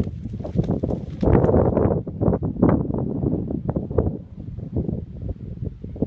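A horse's hoofbeats on turf, an irregular run of dull thuds. A louder rushing noise runs over them from about one to three seconds in.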